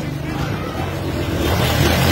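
A nearby pickup truck's engine running, with a steady low rumble, and faint voices near the end.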